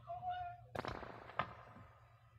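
Two sharp clicks, about two-thirds of a second apart, after a brief faint tone.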